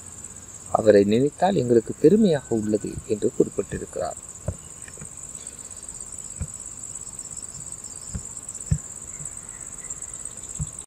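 A voice speaks for the first few seconds, then stops. A steady high-pitched whine runs underneath throughout, with a few faint ticks in the second half.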